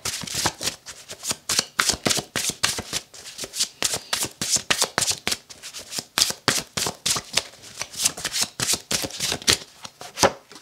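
A deck of tarot cards shuffled by hand: a quick, uneven run of card slaps and flicks, several a second.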